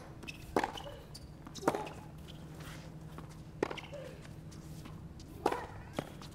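Tennis ball being struck back and forth in a baseline rally on a hard court: four sharp hits, spaced about one to two seconds apart, over a faint steady hum of the stadium.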